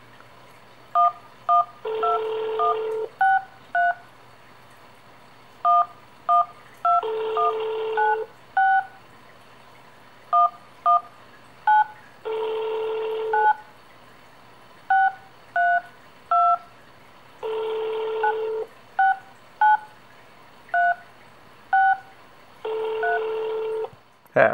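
Smartphone keypad DTMF tones on a phone call: short two-note beeps, one per digit tapped, in quick runs of two to five presses. A longer, lower tone about a second long repeats about every five seconds between them.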